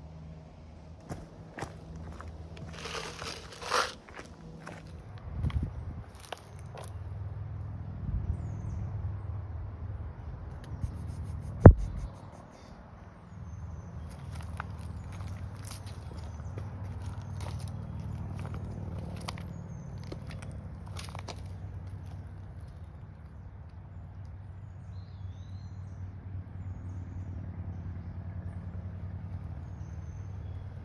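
Footsteps and crunching of dry leaves on a rocky, leaf-strewn trail, with scattered rustles and clicks over a steady low rumble. A sharp, loud knock comes about twelve seconds in.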